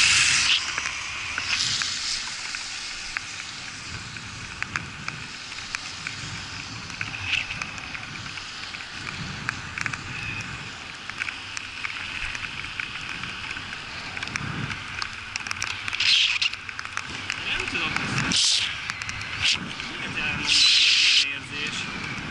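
Bicycle riding on wet asphalt: tyres hissing and crackling through surface water, with wind buffeting the camera microphone. A car that has just passed fades away in the first second, and several louder gusts of rushing noise come near the end.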